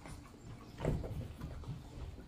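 A Boston terrier making a short grunt about a second in, followed by a few faint softer sounds.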